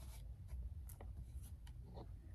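Tarot cards being handled in the hands: faint rustling with a few soft clicks, over a low steady hum.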